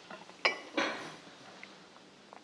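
A light clink of a glass bowl as it is picked up off the counter about half a second in, followed by a brief soft rustle.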